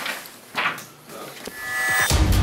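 Sheets of paper rustling briefly twice as they are leafed through by hand. Music then swells in near the end, with a steady held tone rising in loudness.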